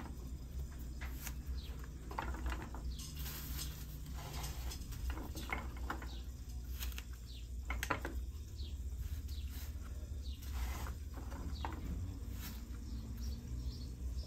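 Light handling noise of woody desert rose cuttings and coarse sand: scattered small clicks, scrapes and rustles as stems are pushed into the sand and picked from a pile. Faint short chirps sound now and then over a steady low hum.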